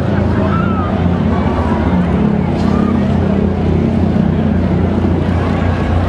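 Super stock pulling truck's engine idling steadily with a deep, even rumble.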